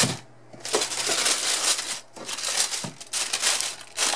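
Shoebox tissue paper crinkling as hands fold it over a pair of sneakers and press it down, in about three bursts of rustling.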